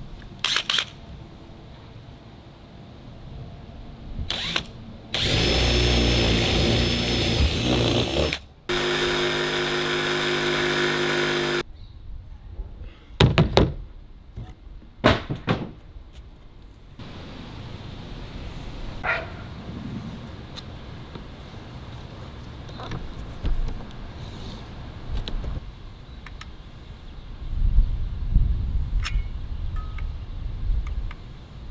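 Cordless drill and power-tool work on a camper trailer roof panel, cutting the opening for a roof vent fan. A rough, noisy tool run starts about five seconds in and lasts three seconds, then a steady motor whine follows for about three seconds. A few sharp knocks come as the panel is handled.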